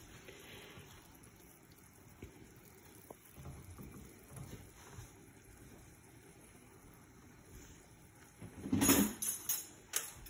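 Faint simmering and stirring of frothy butter and milk in a nonstick pan, a silicone spatula moving through the liquid. Near the end comes a short, much louder clatter.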